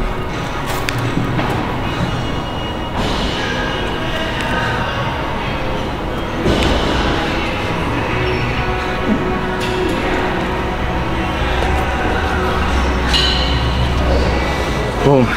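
Background music at a steady level, its texture changing in sections about three, six and a half, and thirteen seconds in.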